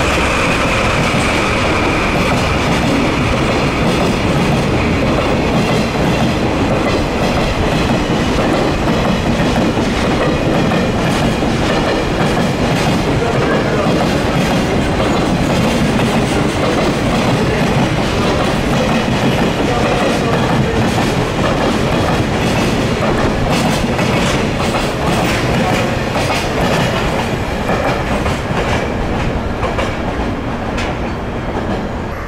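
A DD51 twin-engine diesel-hydraulic freight locomotive goes past at the start, followed by a long train of container wagons rolling by, their wheels clicking over rail joints. It stays loud throughout, with the clicking thickening late on, and eases off slightly near the end as the last wagons pass.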